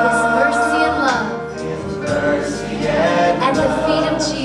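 Live worship song: a group of worship singers sing long held notes together, with a band accompanying and a steady bass underneath.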